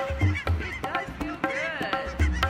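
Canada geese honking, with a longer run of calls near the end, over background music with a steady drum beat.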